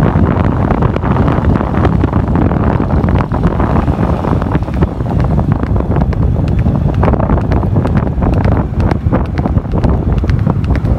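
Heavy wind buffeting the microphone of a camera travelling along a road, a loud low rumble with irregular gusty crackles.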